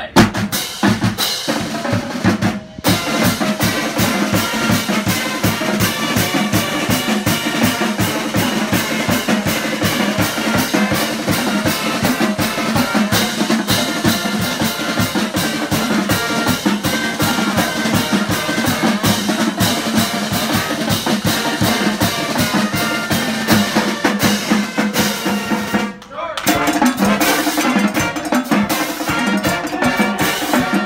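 Marching band playing a school fight song: it opens with a snare drum roll-off, then saxophones and brass play over a drumline of snares, bass drum and cymbals. The playing drops out briefly near the end and picks up again.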